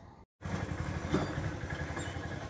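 A motor vehicle's engine running steadily. It cuts in after a split-second gap of silence near the start.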